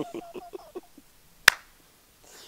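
A short laugh trails off, then hands strike once in a single sharp clap about one and a half seconds in.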